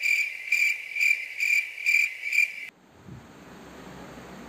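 Cricket chirping sound effect: a steady high chirp pulsing about twice a second, cutting off abruptly about two and a half seconds in, leaving only faint room noise.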